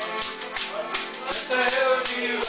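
A Newfoundland folk tune played live on button accordion and acoustic guitar, with an ugly stick struck in a steady jingling beat.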